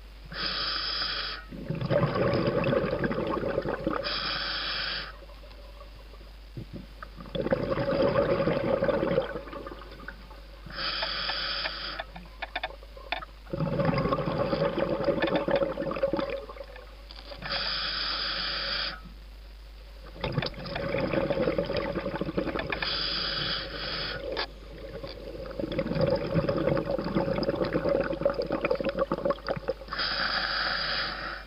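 Scuba diver breathing through an open-circuit regulator underwater: a hissing inhale of about a second, then a longer rush of exhaled bubbles, repeating about every six seconds for about five breaths.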